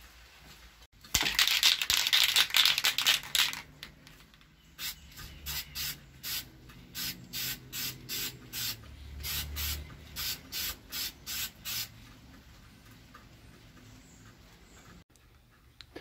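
Aerosol can of Duplicolor lacquer spray paint: one continuous spray of about two and a half seconds, then a run of short spray bursts, about two a second, laying light coats on a guitar neck.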